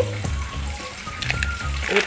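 Background music with a steady low beat, and a few light clicks from ice cubes and a metal spoon being handled in a plastic bowl, about a second in.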